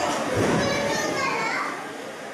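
Children's voices in indistinct chatter and calls, fading off near the end.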